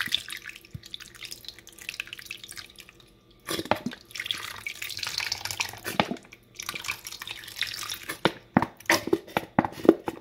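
Zesty Italian dressing poured from a bottle onto shrimp in a bowl, splashing and glugging. A lighter trickle comes first, then two steady pours of a few seconds each, and near the end a run of separate glugs as the bottle empties in spurts.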